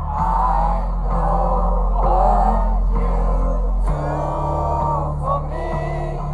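Live music played loud over a concert PA: a deep, sustained bass line that changes note twice, under a sung melodic vocal.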